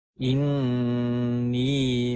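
Quranic Arabic recited in a slow chanted style: about a quarter second in, the voice begins the word "innī" and draws it out as one long held note, bending slightly in pitch near the end.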